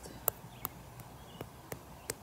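A powder applicator being patted against the camera lens and microphone to put on finishing powder, making about five light taps, two to three a second.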